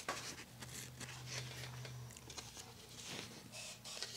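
Faint, quiet handling sounds: a paper plate being moved and set down on a cloth-covered table, with light rustles and small taps.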